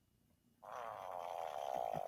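A person's fart, a long fluttering one that starts a little over half a second in.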